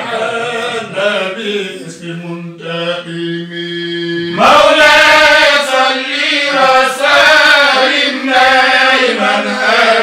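A man's voice chanting an Islamic supplication (du'a) in Arabic, with long drawn-out notes. The chant grows much louder about four and a half seconds in.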